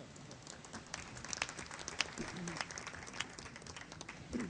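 Audience applauding: a scattered round of clapping that picks up about half a second in and thins out near the end.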